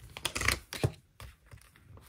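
Pages of a ring-bound planner being handled: a quick run of paper rustles and light clicks, then one sharper click a little under a second in.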